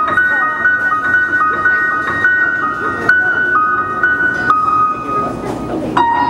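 Live rock band playing with electric guitar, keyboard and violin. A high, sustained two-note figure steps back and forth over a dense lower wash, then settles on one long held note that fades away near the end.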